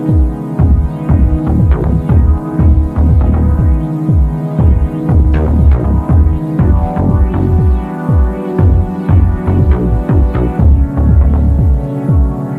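Background electronic music with a heavy, throbbing bass beat repeating under sustained synth tones.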